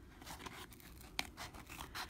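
Small scissors cutting through corrugated cardboard: faint, irregular crunching snips, the sharpest about a second in.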